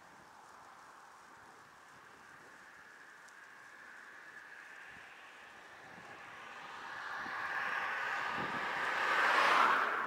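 A car passing fast, its tyre and engine noise swelling over the last few seconds to a peak near the end, over faint steady wind and road noise.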